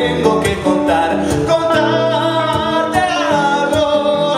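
Live male vocal singing with strummed acoustic guitar accompaniment. The voice holds long notes with vibrato over the guitar's rhythm.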